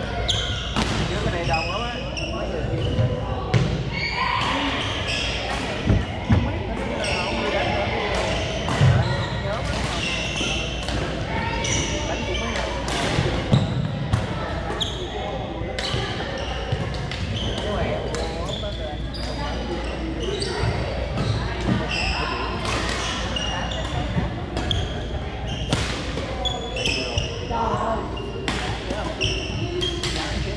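Badminton rallies in a large, echoing gym hall: repeated sharp pops of rackets hitting the shuttlecock, and short squeaks of sneakers on the hardwood floor, over a steady murmur of voices from the other courts.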